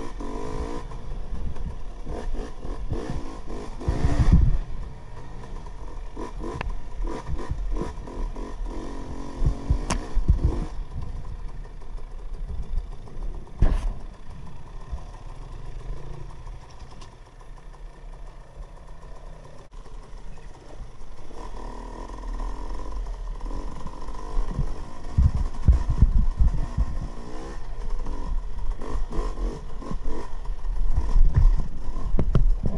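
KTM 300 XC-W two-stroke single-cylinder dirt bike engine running and revving while riding a wooded trail, with knocks and clatter from the bike going over ruts and rocks. The engine goes quieter through a stretch in the middle, then picks up again with more knocks near the end.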